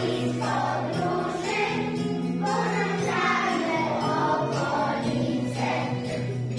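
A group of young children singing a song together over recorded backing music.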